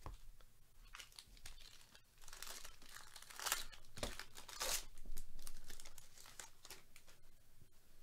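The plastic wrapper of a Bowman Draft jumbo trading-card pack being torn open and crinkled, in several loud rustling bursts through the middle, then only soft handling.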